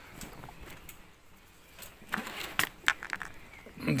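A few light clicks and knocks of rocks being handled, stone against stone, starting about two seconds in after a quiet start.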